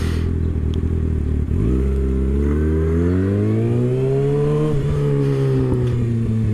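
Kawasaki ZX-6R 636's inline-four engine idling, then pulling away about a second and a half in with its pitch rising steadily, and shifting up near the end so the pitch drops and carries on lower.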